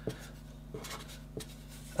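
Felt-tip marker writing letters on paper in a few short strokes.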